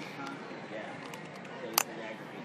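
A single sharp plastic click near the end as the cover snaps onto the battery compartment of a DR200 Holter monitor, over a steady murmur of background chatter.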